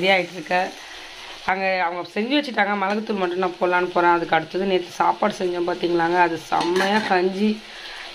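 A woman singing unaccompanied, long held notes with a wavering pitch, with a short pause about a second in.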